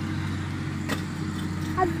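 A steady low hum, with a single sharp click about a second in and a short spoken exclamation near the end.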